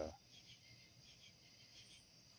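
Crickets chirring faintly and steadily in the night background, a thin high trill.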